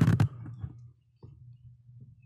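Faint low hum on the podcast microphone feed, swelling and fading: the unexplained 'womp womp' audio artifact the hosts are listening for, which they hear hopping between their two mics. A single click comes about a second in.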